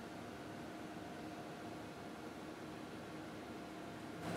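Faint steady hiss with a faint constant hum underneath: room tone, with no distinct events.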